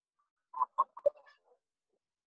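A brief burst of a man's voice heard over a video call: about four quick pulses within a second, like a short chuckle.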